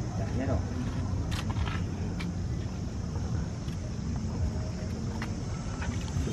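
Indistinct voices of people close by over a steady low rumble, with a few faint clicks.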